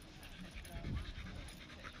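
A dog panting, faintly.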